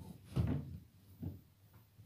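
Drawer of a chest of drawers being worked by hand: a dull knock about half a second in and a lighter one just past a second.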